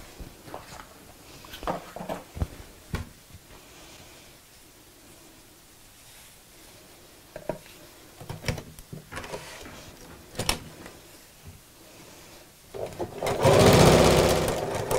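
Fabric and bias binding handled at a sewing machine, with scattered rustles and small clicks. About a second before the end, the electric sewing machine starts running and stitches steadily along the binding.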